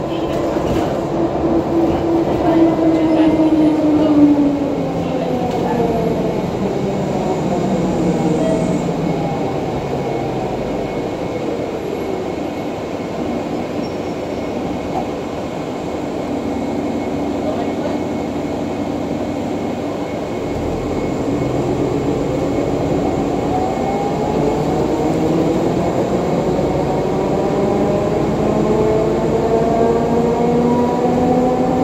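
Cabin sound of a 2014 NovaBus LFS hybrid-electric bus, with its Cummins ISL9 diesel and Allison EP40 hybrid drive, in motion. The drive's whine falls in pitch over the first few seconds as the bus slows, runs low and steady through the middle, and climbs again from about two-thirds of the way in as the bus pulls away and gathers speed.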